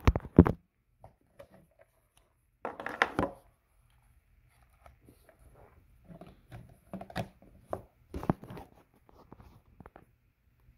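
Handling sounds of plastic gear: a few sharp clicks and knocks at the start, a denser clatter about three seconds in, then scattered lighter clicks and taps, as a wall charger is plugged into a plug-in power meter.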